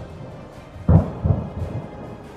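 Ammunition detonating in a burning depot, heard from a distance: a loud boom just under a second in, followed by two smaller thuds.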